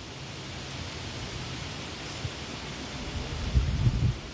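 Steady hiss of outdoor background noise with no voices, and a low rumble swelling near the end.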